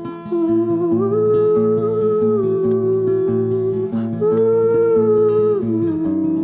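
Acoustic guitar played steadily with a man's wordless singing held over it in two long, gently sliding phrases, the second starting about four seconds in.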